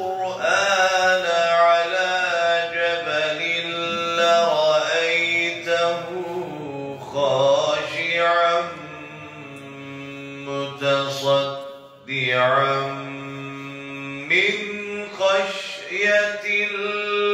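A man's voice reciting the Quran in Arabic as a slow melodic chant, holding long drawn-out notes with ornamented turns of pitch and a short break for breath about three-quarters of the way through.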